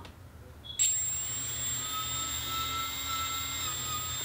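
A small brushless multirotor motor, with no propeller, spun up by its speed controller from the motor-test slider: a steady high-pitched electronic whine made of several constant tones starts about a second in and holds steady.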